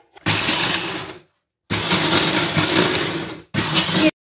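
Small electric press-top chopper grinding dry whole spices (cumin, carom seed, coriander seed, black pepper, fennel) coarsely, run in three pulses: one of about a second, a pause, one of nearly two seconds, then a short burst near the end.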